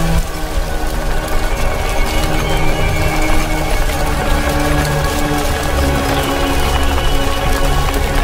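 Film score of long held notes with a dark, sustained feel, over a continuous low rumble and fine crackling: the sound of a world crumbling apart.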